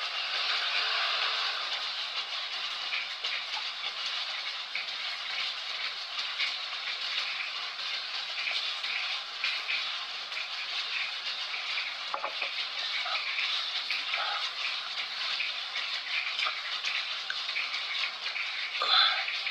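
A steady, rain-like hiss, even throughout, with no voice over it.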